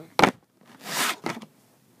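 Handling noise from a clear plastic football helmet visor moved right up against the microphone: a sharp knock about a quarter second in, then a scraping rush around one second with a few small clicks.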